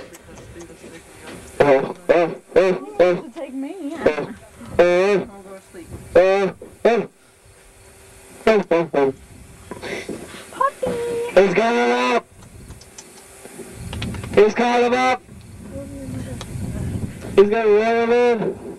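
Raised voices calling out in short bursts, with brief gaps between them, and a low rumble partway through.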